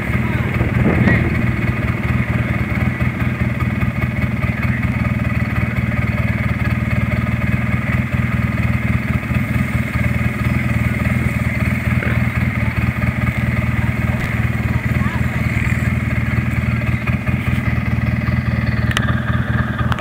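Off-road vehicle's engine running steadily close to the microphone, holding one low pitch without revving.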